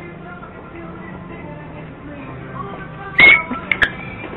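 A person falling down onto a hard store floor: one loud thud about three seconds in, then a couple of smaller knocks.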